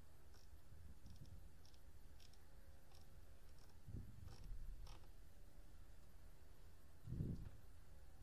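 Quiet room tone with scattered faint, sharp clicks, and two short dull thumps, the louder one near the end.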